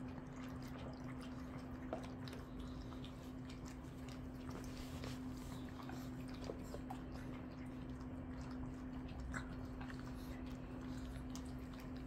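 Several Shih Tzus lapping broth and chewing food from their bowls: faint, scattered wet clicks and licks, over a steady low hum.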